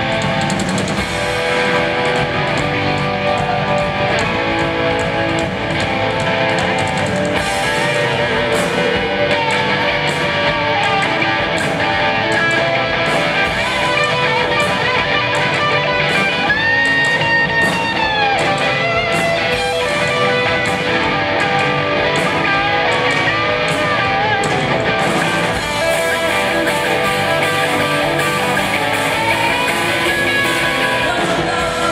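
Live rock band playing an instrumental passage led by a sunburst single-cut electric guitar, with drums and cymbals keeping a steady beat. About halfway through, the guitar holds a long bent note before releasing it.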